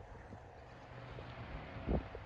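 Wind buffeting the microphone over a low, steady hum, with one short low thump near the end.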